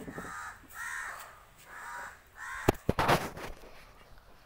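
A bird calling four times, evenly spaced about three-quarters of a second apart, followed by a few sharp knocks about three seconds in.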